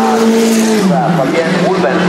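Single-seater race car's engine running at speed as it goes away, its note dropping in pitch about a second in. A voice talks over it.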